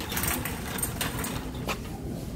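Metal wire shopping cart rattling as it is pushed over a concrete floor, with three sharper clanks.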